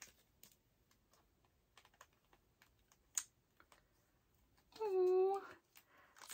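Faint, scattered light clicks and taps of photo cards and their packaging being handled, with one sharper click about halfway through. Near the end a woman makes a short, high-pitched vocal sound without words.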